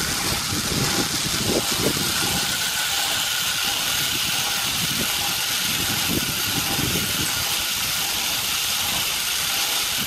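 Steady wind rushing over a selfie camera's microphone on a moving sky cycle high on its cable, an even noise that stays at one level throughout.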